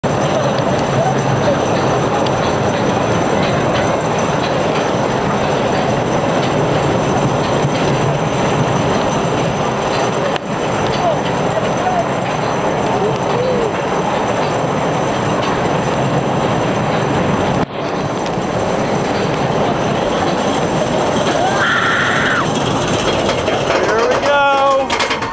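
S&S 4th Dimension coaster train being hauled up the lift hill: a loud, steady mechanical rattle mixed with wind on the microphone, dipping briefly twice, with faint voices underneath.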